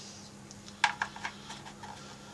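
Light plastic clicks of twist-lock bulb sockets being handled and seated in a Corvette digital gauge cluster's circuit board, with two sharper clicks about a second in.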